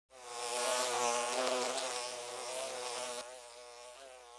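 An insect buzzing: a droning buzz that wavers in pitch. It drops suddenly a little after three seconds in and then fades away.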